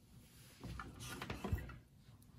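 Small craft iron pressed and slid over a sewn fabric patch on a padded ironing board: soft rubbing with a couple of light knocks, pressing the seam open.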